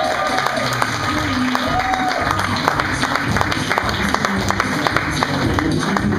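Audience applauding over music with low sustained notes, the claps dense and steady throughout.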